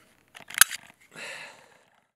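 Springfield Armory Hellcat 9mm pistol being field-stripped: small clicks, then one sharp metallic click about half a second in, then a short scrape of the slide running forward off the polymer frame's rails.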